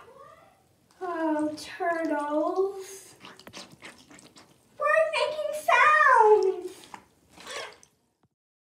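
Water sloshing and splashing in a filled bathroom sink as a plush toy is pushed under, heard as a run of short splashes in the middle. Before and after it, a voice makes two drawn-out wordless sounds that rise and fall in pitch; these are louder than the water.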